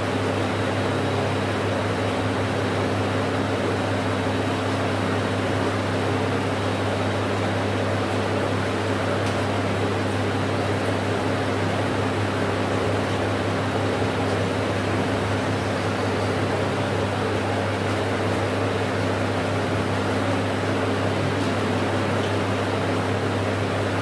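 Steady electric motor hum with a constant rush of moving air, unchanging throughout.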